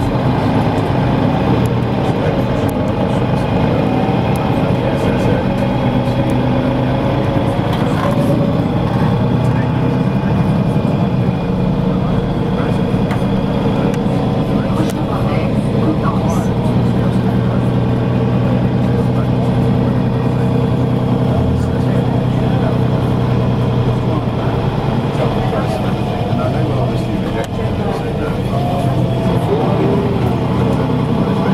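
A motor vehicle's engine running steadily amid city traffic, with indistinct voices in the background.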